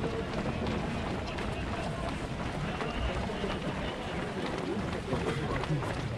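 Footsteps of a large pack of runners on an asphalt road, with scattered voices in the background.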